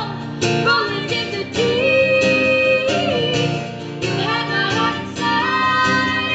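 Two or three female voices singing a pop song together over a strummed acoustic guitar, with long held notes and a steady strumming beat.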